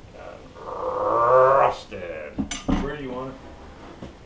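A sharp clink of porcelain from the old toilet being handled, about two and a half seconds in, after a long drawn-out voice near the start.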